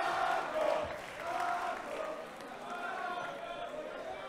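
Crowd noise from a hall audience: many voices talking and calling out at once, dying down over the few seconds.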